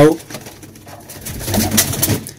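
A pigeon cooing briefly, a low call starting about one and a half seconds in.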